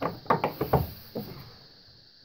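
A quick run of knocks and clicks, about six in the first second and a bit, then dying away: hands working the hasps on the case of a 1934 BC-157-A army radio set to open it.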